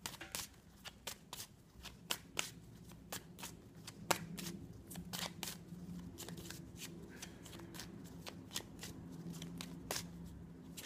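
A deck of oracle cards shuffled by hand: a run of quick, irregular card clicks and slaps, several a second.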